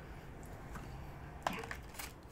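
Quiet room tone in a small room, with one short faint click about one and a half seconds in.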